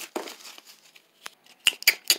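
Paper cutout puppets and scraps being handled and rustled, a soft crinkling of paper. About a second and a half in come several short, sharp clicks.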